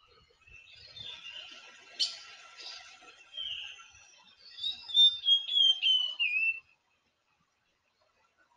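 A bird chirping: short whistled notes, with a quick run of notes stepping down in pitch in the second half. There is a single sharp click about two seconds in.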